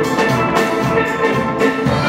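Steel band playing: several steel pans ringing out a melody over a drum kit keeping a steady beat.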